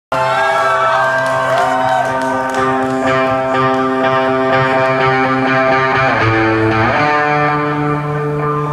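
Live rock band music: sustained, ringing chords held for several seconds, shifting to a new chord about six to seven seconds in.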